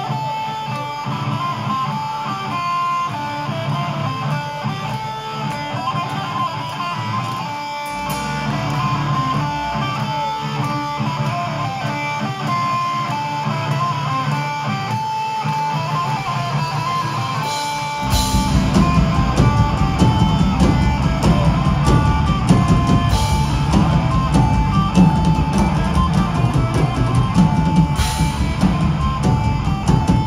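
Live thrash metal band playing: an electric guitar picks a melodic intro line over a light backing. About 18 seconds in, the drums and the rest of the band come in together and the music gets louder and heavier.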